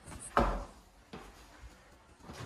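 A sharp thump about half a second in, then a lighter click about a second later.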